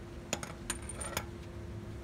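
Castle nut being spun off a truck's front wheel spindle by hand, making a few sharp metal clinks within about a second, one of them ringing briefly.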